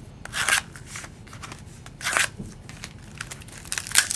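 Clear plastic wrapper of a baseball-card pack crinkling in the hands as the pack is opened, in short rustling bursts about half a second in, two seconds in and again at the end.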